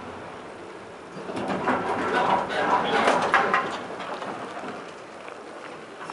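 OTIS traction elevator doors opening on arrival: a couple of seconds of sliding rattle and clatter, loudest from about a second and a half to three and a half seconds in.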